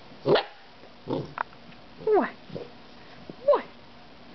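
Silver Labrador puppy barking four times, short high barks that each drop in pitch, spaced about a second apart.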